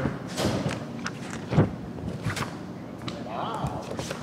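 A few thumps and knocks, the loudest about one and a half seconds in, from a council member getting up from a table and walking off, with low voices in the room.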